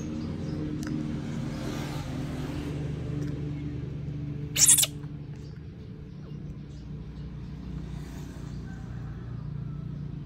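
Steady low hum of a running motor, with one short, loud hiss about halfway through.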